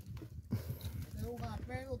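Faint voice in the background, speaking softly from about half a second in, with a couple of light knocks.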